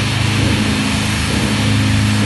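Death metal music: heavily distorted electric guitars and bass holding one low note steadily, with no vocals.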